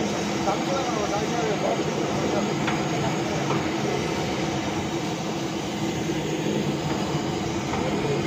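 Rotating-drum puffed-rice (muri) roasting machine running with a steady mechanical rumble and hum, puffed rice tumbling out through the mesh sieve at its outlet.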